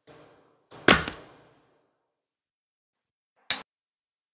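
Kitchen prep knocks on a plastic cutting board: a solid, deep thud about a second in with a smaller knock right after it, then a single short, sharp click near the end, with dead silence between.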